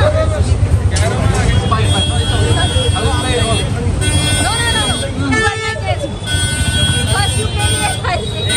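Vehicle horns sounding in busy street traffic: two long, steady blasts of about two seconds each, one a couple of seconds in and one near the end, over loud talk and crowd chatter.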